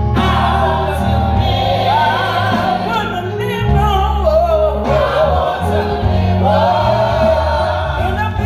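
Women's gospel vocal group singing together through microphones, with sliding, ornamented melody lines over steady low instrumental backing.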